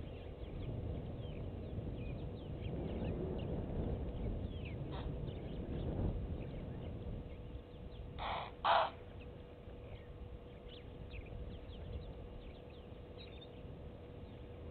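Two harsh bird calls in quick succession about eight seconds in, the loudest sound, over faint scattered chirps of small birds and a steady faint hum.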